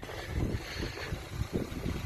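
Wind buffeting a phone microphone in irregular low rumbling puffs over a steady outdoor hiss.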